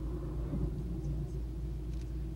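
Steady low rumble of the vehicle's rocket engine firing on the pad, heard from a distance through the webcast feed.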